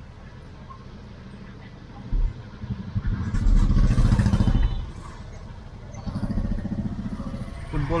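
Motorcycle engines passing close by, heard from inside a slow-moving car: a loud one from about two to five seconds in, and a second, quieter one near the end, over a low, steady cabin hum.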